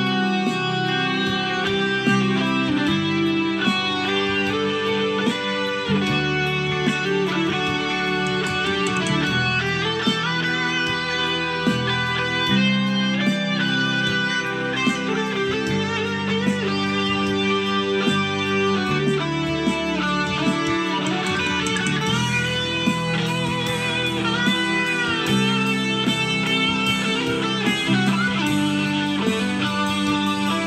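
Chord CAL63M Strat-style electric guitar with single-coil pickups played lead over an E minor backing track with a steady beat and a bass line. Bent, wavering notes come in the second half.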